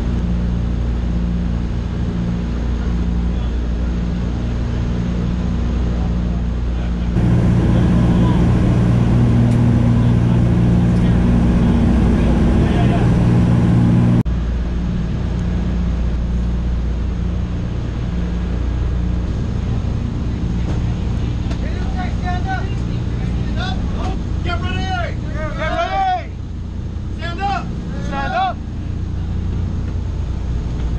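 Steady drone of a C-47 transport's piston radial engines heard from inside the cabin, louder for a stretch in the first half. Voices are shouted over the drone near the end.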